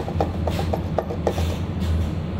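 Two 3D-printed plastic bike frame parts, the fork and the piece it slots into, clacking against each other about five times a second as they are wiggled: the joint has play where it should fit tightly.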